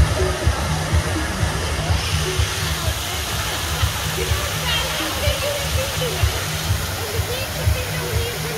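Fountain jets splashing into a pool, a steady rush of falling water, with music playing and people's voices in the background.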